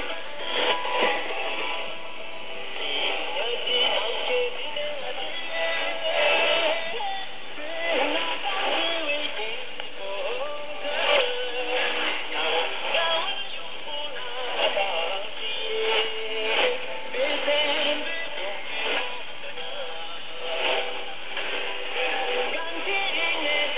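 Shortwave AM broadcast from PBS Xizang on 6025 kHz, heard through a communications receiver: music with singing, its audio cut off above about 4 kHz.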